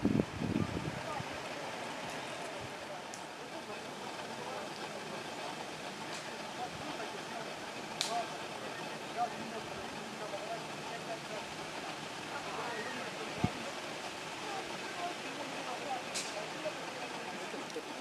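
Steady outdoor background noise with faint, indistinct voices and a few soft clicks; a louder low rumble sits in the first second.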